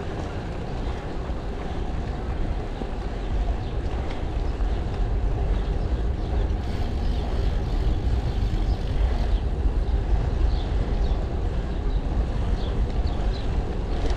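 Steady rumble of wind and road noise on the microphone of a camera riding on a moving bicycle, with a few faint high chirps in the last few seconds.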